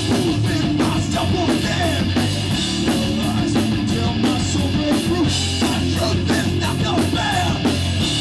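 Hardcore punk band playing live and loud: distorted electric guitar, bass and a driving drum beat with repeated cymbal crashes.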